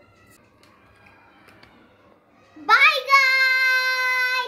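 A young girl's voice, after a quiet start, sweeps up and holds one long, loud high note, sung out near the end.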